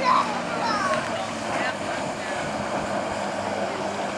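Motorboat engine running steadily under a rush of water and wind noise, with faint shouts from the people on the tube in the first second or so.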